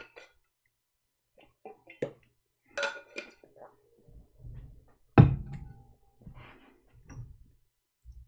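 A man drinking water: small sips, swallows and breaths, with a sharp knock about five seconds in.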